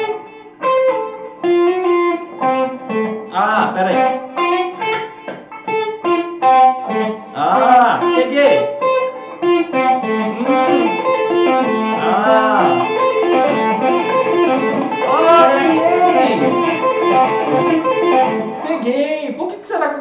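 Electric guitar played solo: a run of quick single notes, then longer held notes that bend up and back down, with vibrato.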